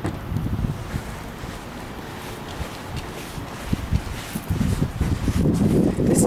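Wind buffeting the camera's microphone outdoors, an uneven low rumble that grows louder in the last second or so.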